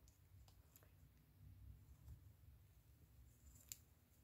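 Near silence: low room tone with a few faint clicks from a metal crochet hook working yarn, the clearest one near the end.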